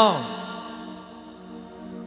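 A man's drawn-out word trailing off with a falling pitch at the very start, then a steady held drone chord on a keyboard instrument sustained under the pause in the sermon.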